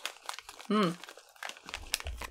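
Small plastic candy wrapper crinkling in the hands in quick, irregular crackles as gummies are picked out of it.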